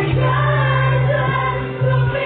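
Live gospel worship song: several women singing together through microphones and a PA, with acoustic guitar and band accompaniment. The sound dips briefly near the end.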